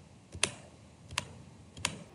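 A few sharp clicks of a computer mouse, spaced under a second apart, as the user clicks through the web page.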